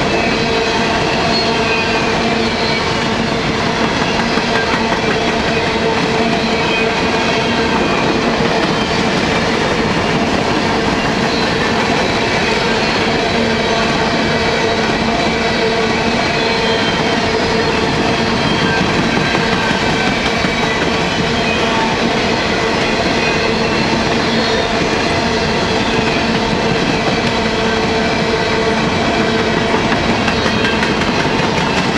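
A long train of steel coal hopper cars rolling past close by: a steady, unbroken clatter of wheels over the rail joints.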